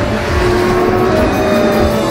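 Loud theme music with a car engine sound effect running under it, for the show's closing titles.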